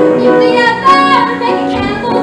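A woman singing a show tune into a handheld microphone over piano accompaniment. Near the middle she holds a high note that dips at its end.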